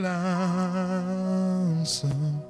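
A man humming one long held note into a microphone, the pitch wavering slightly, over soft music. The note ends shortly before the end, followed by a quick breath.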